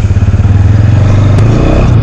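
Motorcycle engine running steadily at low riding speed, its firing pulses a fast even throb.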